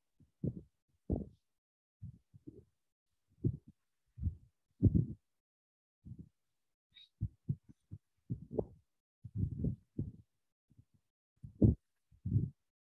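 Irregular soft, muffled low thumps and bumps, a dozen or so scattered through the stretch, coming over an online video-call connection.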